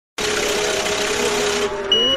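A steady hiss with a faint low hum, ending in a short high beep, as the opening of a song track before the beat comes in.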